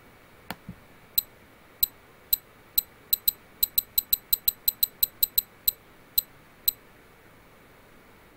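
A run of 20 short, high-pitched camera-trigger ticks, one per photo. They start slowly, come quickly in the middle at about five a second and slow again near the end, which is a time-warp time-lapse following an S-shaped rate curve. A quick double click comes just before the run.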